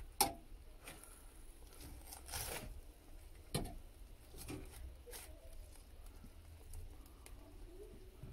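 A metal fork tapping and clinking against an air grill's non-stick tray and grate as chicken wings are turned over: a few scattered light clicks, with a slightly longer one about two and a half seconds in.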